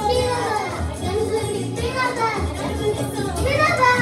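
Children's voices singing and calling out over a recorded song with a steady bass beat.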